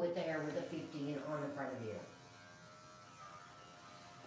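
Electric dog clipper running with a steady hum as it trims a cocker spaniel's ear. A voice talks over it for about the first two seconds, and after that the clipper is heard on its own at a lower level.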